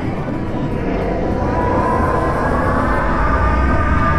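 Experimental electronic music: a dense, steady droning noise texture that sounds like an aircraft engine, with a thin whine that comes up about halfway through.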